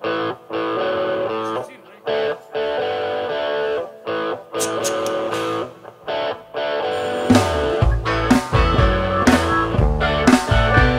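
Live rock band starting a song: an electric guitar plays a chopped, stop-start chord riff on its own, then drums and bass guitar come in about seven seconds in with a steady beat.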